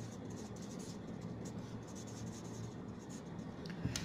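Marker pen writing a short line of words on a board, a quiet run of irregular short strokes, over a faint steady low hum.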